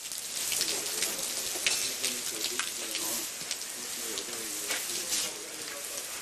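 Water from a garden hose spraying over a horse's coat and the wet concrete floor: a steady hiss with fine spattering, with faint men's voices underneath.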